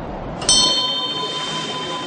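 A small metal bell struck once about half a second in, ringing on with several high tones that fade over the next second or so.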